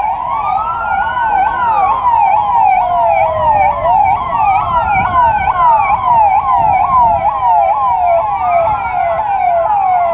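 Sirens of a passing police vehicle convoy. One gives a fast yelp, several pitch sweeps a second, over another's slow wail that rises and falls about every four seconds, with engine and traffic rumble beneath.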